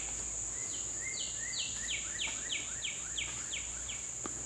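Northern cardinal singing a run of downslurred whistled notes, about three a second, resuming about a second in after a short pause. Under it runs a steady high-pitched insect drone.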